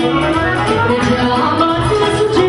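Live Romanian folk party music (muzică de petrecere) from a band, a mostly instrumental passage with held melody notes over a steady beat.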